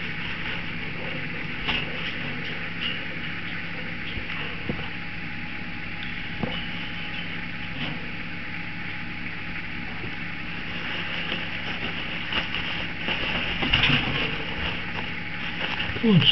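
A steady low background hum, with occasional faint clicks and soft paper-towel rustling as chicks are handled; the rustling grows louder about twelve to fourteen seconds in.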